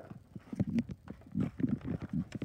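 Irregular knocks and thumps of footsteps on a carpeted floor, mixed with handling noise from a phone held close to the microphone. They get louder about half a second in.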